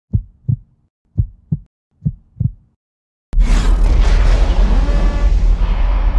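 Channel-logo intro sound effect: three pairs of short, low thumps like a heartbeat, then about three seconds in a sudden loud boom that carries on as a dense, rumbling wash.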